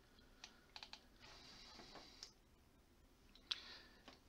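Near silence: room tone with a few faint clicks and a short faint hiss.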